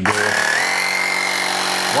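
Bosch EasyPump cordless air compressor starting up and running: a steady motor whine over a hiss of pumping noise. The whine rises slightly in pitch in the first half second as the motor comes up to speed, then holds level.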